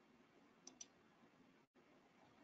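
Near silence with two faint, short clicks in quick succession about two-thirds of a second in, typical of a computer mouse button being clicked. The sound cuts out completely for an instant near the end.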